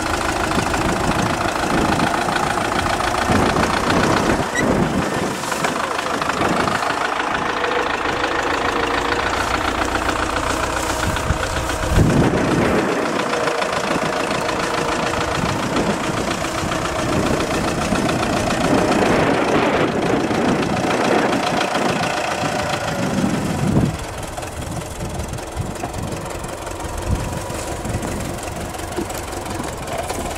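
Tractor's diesel engine running as the tractor drives with a hay bale raised on its front loader, its note rising and falling with the throttle, with a knock about twelve seconds in. About 24 seconds in the engine goes quieter as the tractor stops.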